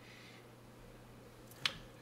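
Faint room noise, then a single short, sharp click near the end.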